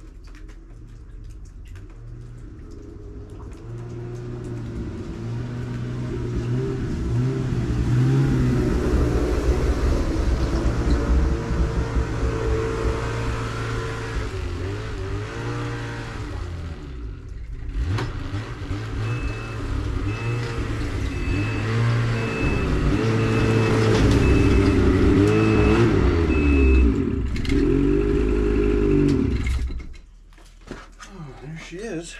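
Ski-Doo Expedition SE snowmobile engine running as the sled approaches, getting louder, its pitch rising and falling with the throttle. Partway through, a reverse warning beeper sounds about ten times, roughly once a second, while the sled backs in. The engine is shut off just before the end.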